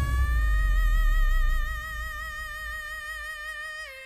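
A female singer holds the song's long final belted note on "me" with an even vibrato, sliding up a little at the start. A low backing tone fades out about halfway through, and the note cuts off just before the end.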